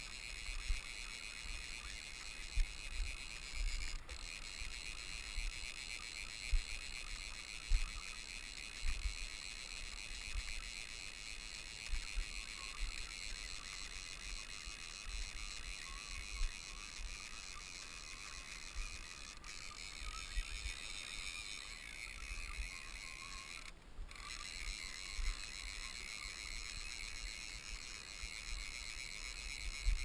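Irregular low thumps and rumble on the camera's microphone over a steady faint high hiss.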